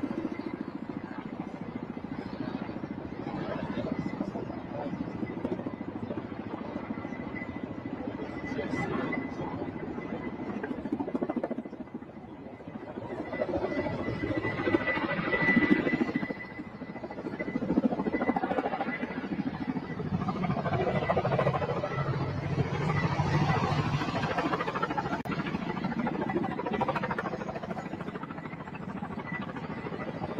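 Outdoor traffic ambience: vehicle engines and road noise, swelling louder about halfway through and again for much of the second half, over a faint steady high tone.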